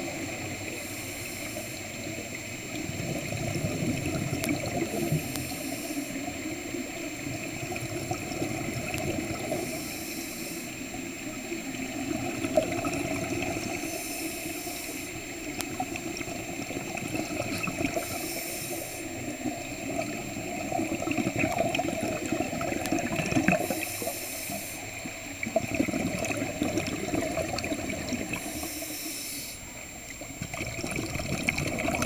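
Scuba breathing heard underwater: a diver's regulator venting a burst of exhaled bubbles about every four to five seconds, over a steady underwater hiss and wash.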